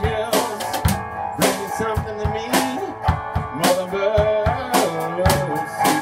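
Live band playing: a drum kit keeping a steady beat of roughly two strikes a second, with guitar and other pitched parts over it.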